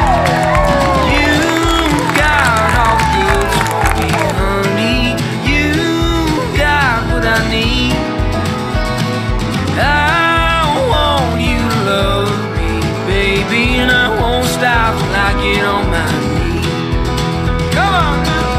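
Country song playing as a soundtrack, with a steady beat under gliding melodic lines.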